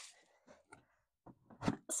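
A few faint clicks and scrapes as a plastic centre fin is slid into the fin box of an inflatable stand-up paddle board.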